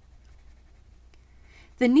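Crayola colored pencil shading on smooth cardstock: faint, quick, short scratchy strokes of the lead on paper. Speech begins near the end.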